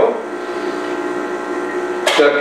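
An espresso machine's pump humming steadily while it pushes water through the coffee puck during an espresso shot.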